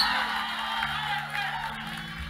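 Soft background keyboard chords held steadily, fading slightly, as a quiet pad under the service.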